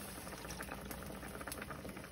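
Pot of sambar simmering: a steady, soft bubbling with many small pops.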